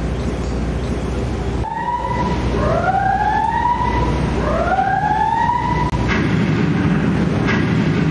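A siren wailing for about four seconds, starting a couple of seconds in: its tone rises and holds twice, then cuts off. Under it runs the steady low rumble of a river tour boat's engine.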